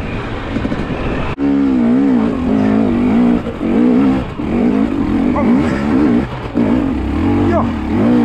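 KTM enduro dirt bike engine running under load, its revs rising and falling again and again as the rider works the throttle up a steep, loose rocky climb. There is a brief break in the sound about a second and a half in.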